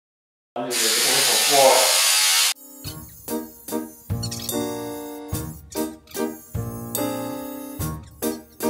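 Electric hair clipper buzzing loudly and harshly close up for about two seconds, starting about half a second in, with a voice under it; it is really noisy. Then background music with a regular beat takes over.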